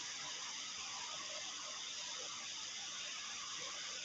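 Faint, steady hiss: the background noise of the lesson recording, with no speech or distinct event.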